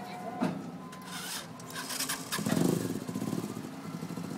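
Motor vehicle engine running, with a short louder surge of pulsing engine sound about two and a half seconds in; a sharp click and some rustling handling noise come earlier.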